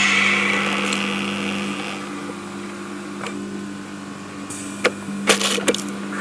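Electroacoustic collage of recorded sounds: a steady low hum runs throughout, a burst of hiss swells at the start and fades over about two seconds, and a few sharp clicks and knocks come near the end.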